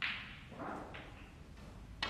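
Snooker cue tip striking the cue ball with a sharp click, followed about a second later by a second, lighter click as the cue ball strikes an object ball.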